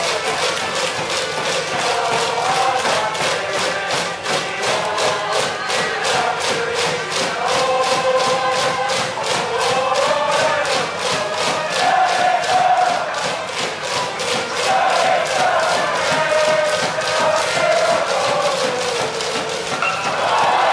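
High school baseball cheering section's band playing a cheering tune, with many voices chanting along over a quick, steady drum beat.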